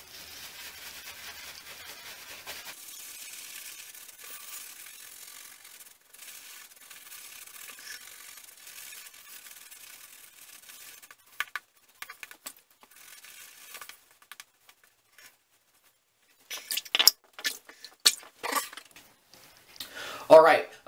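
Simpson Chubby 2 Best Badger shaving brush scrubbing shaving cream into a lather on the face: a steady bristly rubbing for about the first ten seconds, then broken strokes with short gaps, and several louder scrubs near the end.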